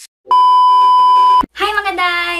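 A single steady electronic beep, one unwavering tone lasting about a second and cutting off sharply; a woman's voice starts right after it.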